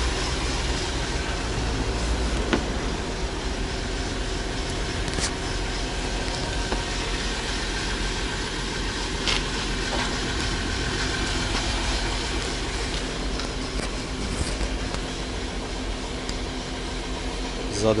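Volkswagen Touareg engine idling steadily, with a few light clicks from hands working the seat and door trim.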